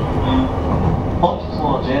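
JR East E233 series electric commuter train running at speed, heard from inside the passenger car as a steady low rumble.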